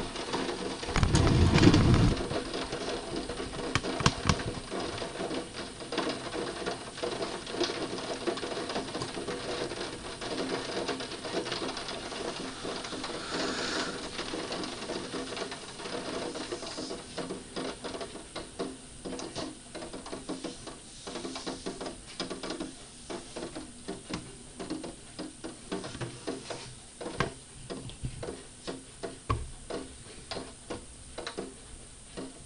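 Rain during a thunderstorm drumming on a window and its sill: a dense, irregular tapping of drops that becomes sparser and more distinct in the second half. A brief low thump about a second in.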